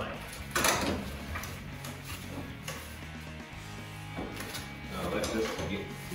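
Backpack's fabric, straps and buckles rustling and knocking against a dryer drum as it is pulled out, with the loudest clatter under a second in and a few softer knocks after. Background music plays underneath.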